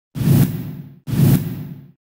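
News-channel ident sound effect: two identical whooshes with a deep low body, each starting suddenly and fading away over about a second, one right after the other.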